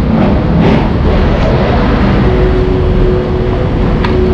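Loud street traffic noise: a motor vehicle engine running close by, with a steady hum joining about halfway through.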